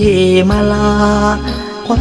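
Thai luk thung song: a singer holding a long sung line over band accompaniment, with a steady bass underneath.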